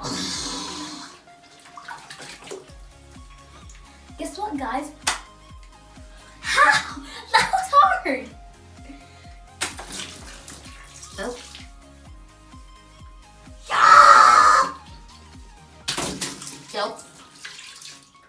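Water balloons being squeezed and popped by hand in a bathtub full of them: a few sharp pops and bursts of splashing water, the loudest about 14 seconds in. Background music with a steady low beat runs underneath, and a child's voice is heard now and then.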